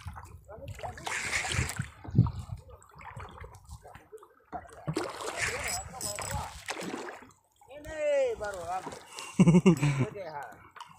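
Sea water splashing and sloshing against the hull of a small wooden fishing boat in a choppy swell, in washes that come and go. A brief pitched sound follows about eight seconds in, and a voice near the end.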